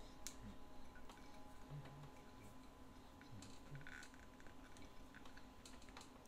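Near silence with faint, scattered small clicks and handling noise from hands gripping and working a stuck sewing-machine hand wheel.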